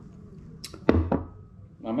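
A few short, sharp knocks or slaps, the loudest about a second in.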